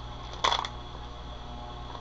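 A single brief, soft noise about half a second in, over a steady low electrical hum.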